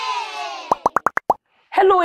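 The tail of a children's intro jingle with cheering kids fades out with its pitch sliding down, then a quick run of about six short rising 'bloop' sound effects. A woman starts speaking near the end.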